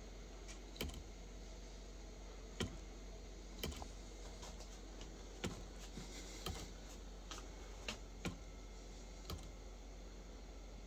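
Light, sharp clicks and clacks at irregular intervals, roughly one a second, from a homemade magnetic torque generator's flapper and reset magnets snapping against their stops as the flapper fires and resets.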